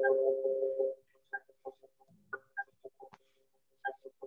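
Steady electrical hum with several held tones coming through a participant's open microphone on a video call, which the host blames on his electricity supply. About a second in it breaks up into choppy, garbled blips.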